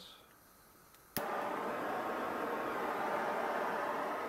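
A handheld gas torch clicks alight about a second in, then its flame gives a steady hiss, used to burn in a lantern's new mantles.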